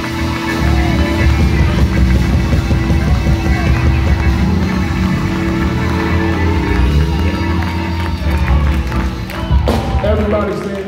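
Live church band playing loudly: drums, bass guitar and keyboard, with one keyboard note held steady underneath.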